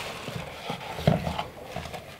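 Cardboard box being handled and opened by hand: flaps scraping and rustling, with a few irregular soft knocks, the loudest about a second in.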